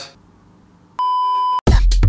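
A single steady, high electronic beep lasting a little over half a second, followed at once by an electronic music track with a drum-machine beat.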